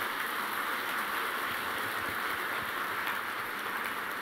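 Audience applauding, a steady even clatter of many hands clapping.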